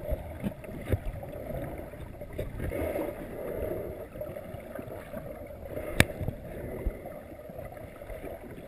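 Muffled water movement heard through a submerged camera, a steady low churning with scattered small knocks and clicks, and one sharp click about six seconds in.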